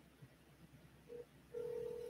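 Faint telephone ringback tone of an outgoing call: a short beep about a second in, then a steady ring tone starting halfway through.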